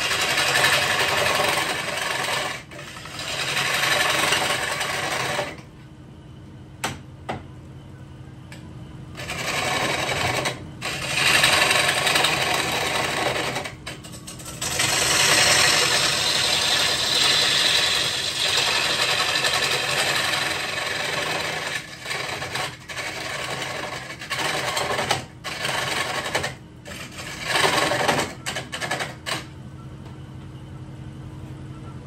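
Wood lathe running while a gouge cuts into a spinning walnut bowl blank, with loud, scratchy cutting passes of a few seconds each. A steady motor hum carries on through the pauses between passes.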